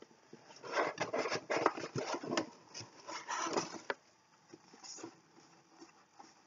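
Rummaging in a cardboard box: irregular rustling and rubbing of paper and packed items with a few light knocks, dying down after about four seconds.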